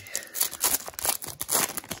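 Foil wrapper of a 2011-12 Upper Deck hockey card pack being torn open and crinkled by hand: a dense run of crackles and rustling. The thin, flimsy foil tears open easily.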